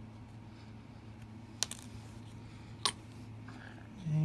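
Two sharp, light clicks about a second and a quarter apart as small plastic model-kit parts and the cement bottle are handled on a cutting mat, over a steady low hum.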